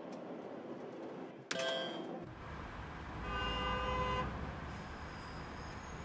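Road traffic rumbling, with a car horn sounding for about a second midway. Before it, a short electronic chime from a slot machine rings out over a steady hum, which breaks off abruptly about two seconds in.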